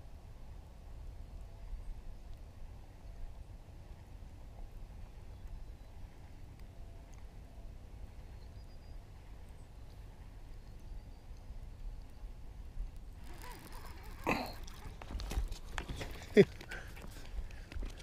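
Faint low wind rumble on the microphone. About thirteen seconds in, a cluster of sharp clicks, knocks and scrapes begins: the rod, reel and line being handled as a small fish is brought in and landed.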